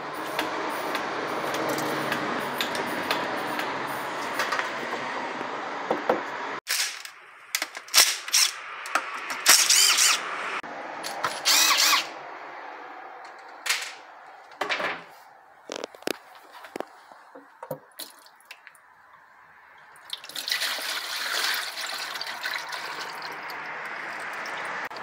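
Automatic transmission fluid running out of the transmission pan's drain hole into a catch pan, a steady splashing pour. After a cut come several short bursts of a cordless drill spinning out the pan bolts, then scattered clicks and drips, and another stretch of running fluid near the end.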